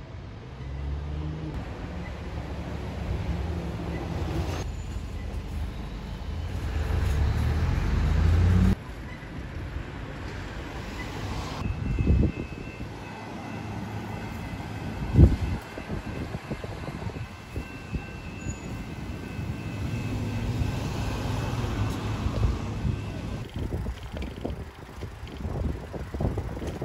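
Road traffic with vehicle engines running and one accelerating, its pitch rising, over the first part. The sound changes abruptly several times, and two brief loud thumps come near the middle.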